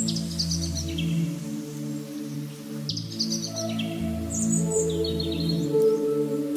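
Slow ambient background music of long held low notes, with bird chirps at the start and again several times in the second half.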